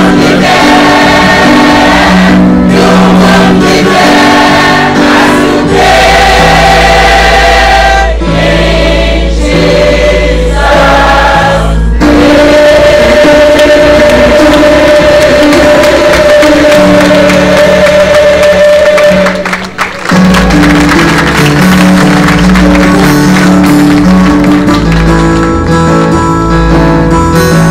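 Large mixed church choir singing a gospel song in full harmony, holding long sustained chords. It drops away for a moment about three-quarters of the way through, then comes back in.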